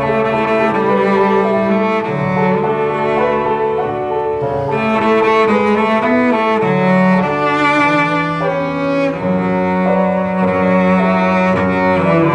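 Cello bowed in a slow, singing melody of long held notes, some played with vibrato.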